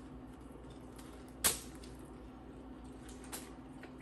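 Eating a toasted sandwich: one sharp crunch about one and a half seconds in and a fainter one near the end, over a steady low hum.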